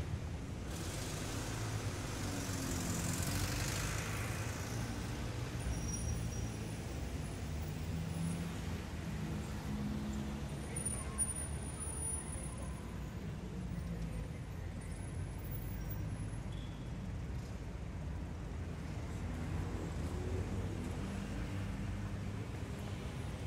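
Steady low background rumble, with one faint click about eleven seconds in.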